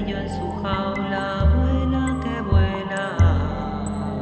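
Ambient electronic glitch music: layered, sustained drone tones, with deep bass notes coming in and out every second or so and small high clicks scattered over the top.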